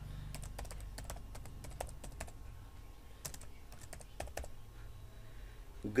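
Keys on a computer keyboard being typed in short, irregular runs of clicks with pauses between them, over a faint low hum.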